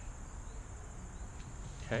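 Insects trilling steadily in the background, a continuous high buzz.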